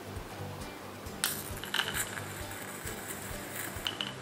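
Background music, with several sharp clicks and clinks, the first about a second in and another near the end, as a long-neck candle lighter is worked and touches the glass jar of a scented candle while lighting it.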